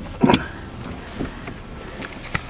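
BMW 3 Series engine idling, heard inside the cabin as a steady low hum. A sharp click comes at the very start and a louder knock-and-rustle follows a moment later, with a fainter one about a second in.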